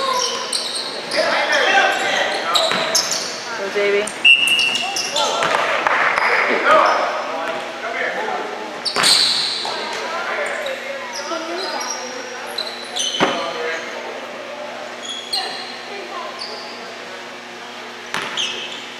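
Basketball bouncing on a gym's hardwood court with sneakers squeaking, echoing in a large hall, and a referee's whistle blown once, briefly, about four seconds in.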